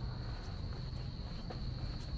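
Insects droning steadily on one high, unbroken pitch, over a low steady rumble.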